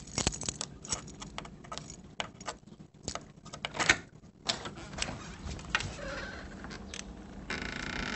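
Irregular clicks, taps and rattles of small hard objects being handled. A steady hiss starts near the end.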